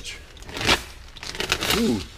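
Plastic shipping mailer rustling and crinkling as it is handled, with one louder crinkle less than a second in.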